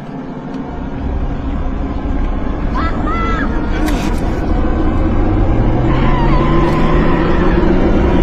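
Film sound mix: a dense low rumble that swells steadily louder, with a low tone gliding upward from about five seconds in and brief shouted voices around three seconds in.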